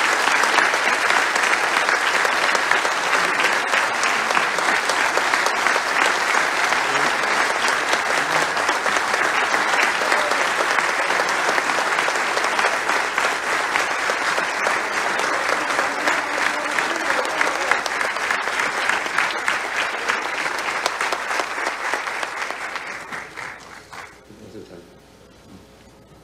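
Large crowd applauding steadily, many hands clapping at once, dying away near the end.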